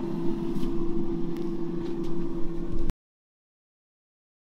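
Countertop air fryer running: a steady fan whir with one constant hum tone. It cuts off suddenly about three seconds in, leaving silence.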